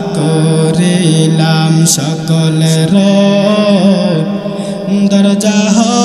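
A man's voice chanting a sermon line in a long, ornamented melody, the Kuakata-style tune of Bengali waz: held notes that bend and waver, sung into a stage microphone.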